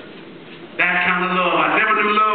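A man's preaching voice through a handheld microphone: after a short lull it comes in suddenly about a second in with a small click, holding one pitch for most of a second before bending away, an intoned, half-sung delivery.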